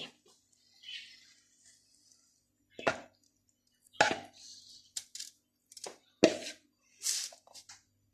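A spoon scraping and knocking against a mixing bowl as crumbly biscuit-and-butter base is tipped and scraped out into a cake tin: a soft rustle about a second in, then a string of sharp, short knocks and scrapes roughly once a second.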